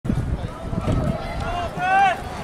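A person's voice calling out over rumbling outdoor noise, with one held call rising and growing louder near the end.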